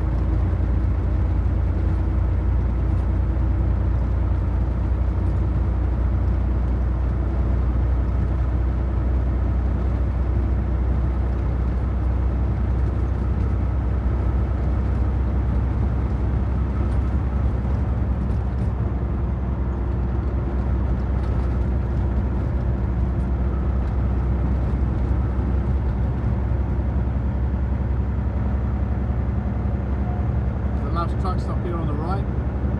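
Steady low drone of a conventional truck's engine and road noise, heard from inside the cab while cruising at a constant speed.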